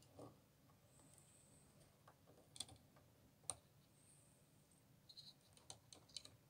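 Near silence, broken by a few faint clicks and taps as fingers handle a model pannier tank locomotive on a workbench, most of them in the second half.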